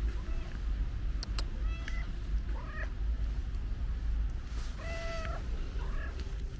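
Stray tabby cat meowing: a series of short meows, the longest and loudest about five seconds in. Two sharp clicks come just after a second in, over a steady low rumble.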